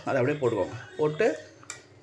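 Mostly a voice talking, with one short clink of a metal spoon against the cooking pot near the end.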